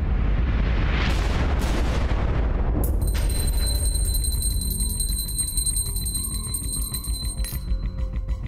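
Ominous horror film score: a low drone under a swelling rush of sound, a sudden boom hit about three seconds in, then high held tones ringing over the drone. Near the end a pulsing rhythm starts.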